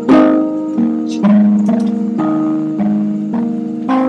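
Instrumental music of the song being signed: piano chords struck roughly twice a second, each ringing and fading before the next.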